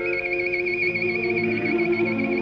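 Solo violin holding a fast high trill over a soft orchestral accompaniment, from an old live recording of a violin concerto.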